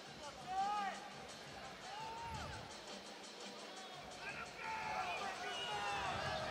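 Arena crowd voices: a couple of single drawn-out shouts from spectators early on, then a busier murmur of overlapping voices from about four seconds in.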